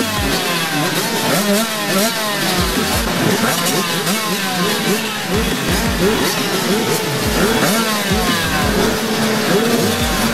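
A pack of motocross bikes revving together, many engines blipping their throttles over one another in a constant overlapping rise and fall of pitch.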